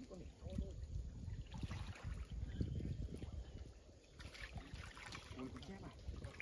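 Water splashing and sloshing as a hooked carp is played in on a fishing line, under a steady low rumble.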